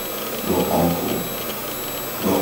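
A person's voice speaking briefly about half a second in, over a steady background hiss.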